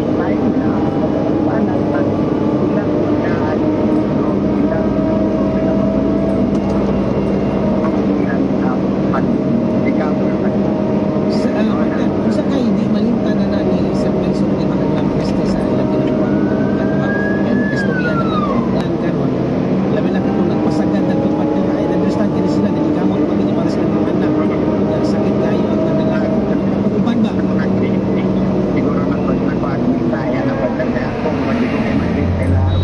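Diesel engine of a wheeled excavator running steadily as the machine travels along a road, a constant engine hum with rattling over it. About halfway through a brief tone rises and then falls away.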